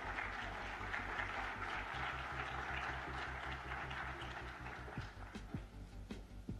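Audience applauding, thinning out near the end, over a low steady hum.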